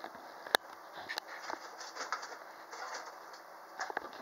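Rustling and handling noise as things are moved about and the handheld camera is jostled, with scattered light clicks and knocks and one sharp knock about half a second in.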